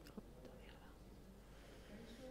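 Near silence: faint, distant murmured voices, with a single small click just after the start.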